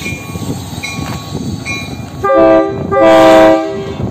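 KCSM EMD GP38-2 diesel locomotive running, then its air horn sounds twice, a short blast about two seconds in and a slightly longer one right after: the signal that the stopped train is about to move off.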